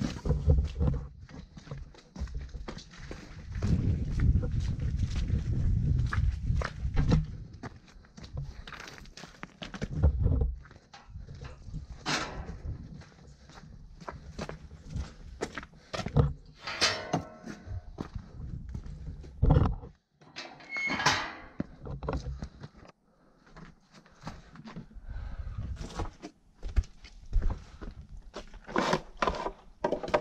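Irregular knocks, thuds and rustling as a person walks about and handles gear: a fabric tow strap is gathered up at the start, and a few clicks near the end come as the chainsaw is handled on concrete. The chainsaw is not running.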